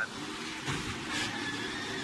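Onboard sound from a NASCAR Xfinity Series stock car: engine and tyre noise heard from inside the car as it drives into the tyre smoke of a multi-car crash.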